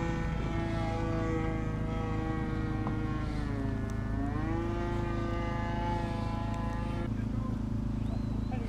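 Radio-controlled electric model plane flying, its motor and propeller giving a steady whine. The pitch sags about halfway through, climbs back, and the whine cuts off sharply about seven seconds in. A low steady hum runs underneath.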